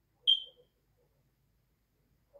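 A single short, high-pitched electronic beep that fades quickly, followed by quiet.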